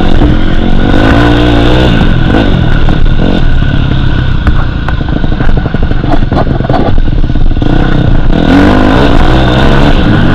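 Dirt bike engine heard on board while being ridden along a dirt track, revving and changing pitch with the throttle. It eases off around the middle, then climbs in revs again near the end.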